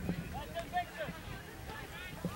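Distant shouts and calls from players and spectators across an open soccer field, the loudest about half a second in, over a low rumble of wind on the microphone.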